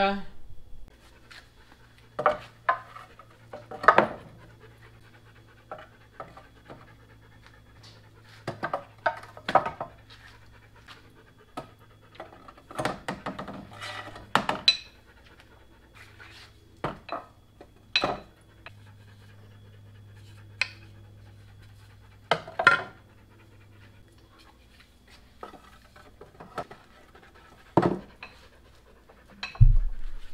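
Wooden axe handles and heads knocking and clattering against a wooden two-by-six rack as axes are set into it, in irregular sharp knocks. A dog pants throughout.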